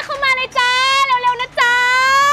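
A young woman shouting long, drawn-out, high-pitched calls through cupped hands, two calls in quick succession.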